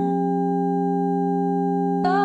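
Electronic music: a held synthesizer chord of steady, pure, sine-like tones, with no melody moving over it.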